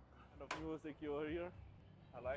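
A man's voice speaking briefly and quietly for about a second, starting with a sharp click.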